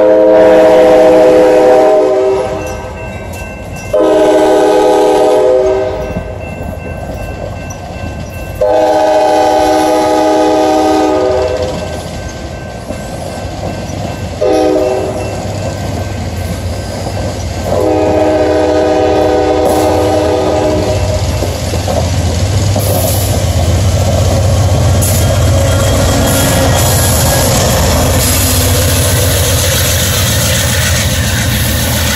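Amtrak Cascades passenger train pulling out: its multi-tone horn sounds five loud blasts, the fourth short, while the coaches roll past with clattering wheels. In the second half a steady low diesel rumble builds as the pushing locomotive, heritage P42 unit 156, comes by.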